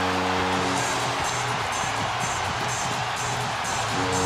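Arena goal horn blaring a steady chord, cutting off about a second in and starting again at the end, over a loud crowd cheering; in the gap, arena music with a beat carries on under the cheers.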